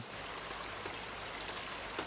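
River water rushing over a wooden eel weir, a steady hiss with a couple of faint ticks.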